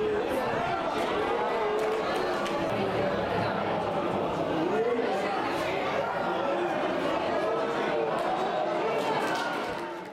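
Many indistinct voices shouting and chattering over one another, players and onlookers at a football match, fading out near the end.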